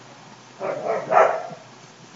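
Stifled, breathy laughter: three short snorting bursts about a second in, with no words.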